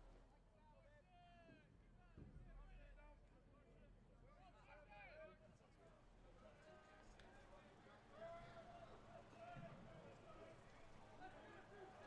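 Near silence: faint distant voices calling out across the ballpark, a few times, over a low steady hum.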